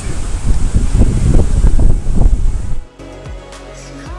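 Wind buffeting the camera's microphone on a ship's open deck, loud and gusty, with background music underneath. About three seconds in the wind cuts off sharply, leaving only the music.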